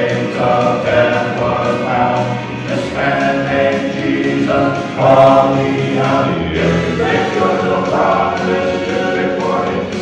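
Male gospel quartet singing in four-part harmony into handheld microphones, amplified through a PA system.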